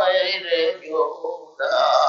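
A man's voice chanting a line of a Bengali devotional song into a microphone, in drawn-out, wavering notes, with a short break about one and a half seconds in before the next phrase starts.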